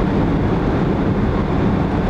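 A moving car's running noise heard from inside the cabin: a steady, low drone of engine and road.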